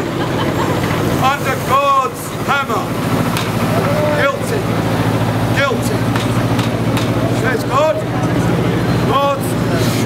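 Street traffic with a double-decker bus engine running, a steady low hum, under snatches of passing voices.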